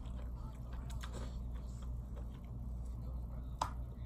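Someone eating from a takeout container: scattered faint clicks and taps of utensil and container, with a slightly sharper tick near the end, over a steady low hum.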